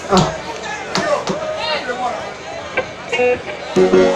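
Stage soundcheck: off-mic talking and sharp knocks from handling microphones and gear. Near the end a held chord from the band's instruments comes in.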